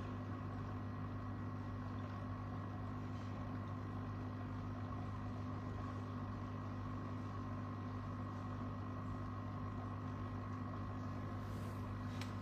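Steady low hum of a running machine or appliance, with fainter higher tones above it, unchanging throughout.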